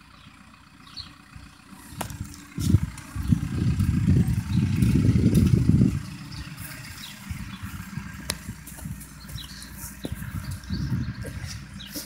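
Wind rumbling on a phone's microphone outdoors. A low rumble swells about two and a half seconds in, is strongest until about six seconds in, then eases to a lighter rumble, with a few faint clicks.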